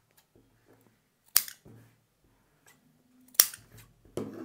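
Two sharp clicks of steel tailoring scissors, about two seconds apart, with faint rustling of fabric being folded between them.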